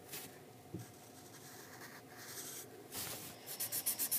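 Sharpie marker scratching over sketchbook paper while colouring in. It moves in soft strokes and then quickens into rapid back-and-forth strokes near the end.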